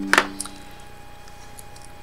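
A sharp click as a USB charging cable is pulled from the side port of an AnyTone AT-D168UV handheld radio, with a fainter second click a moment later, then only a faint steady hum.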